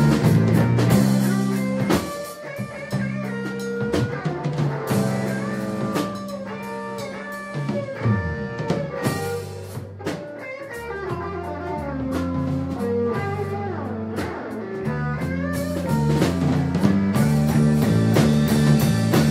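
A live blues-rock band plays an instrumental passage: a harmonica plays a melody with bending notes over electric guitar and drum kit.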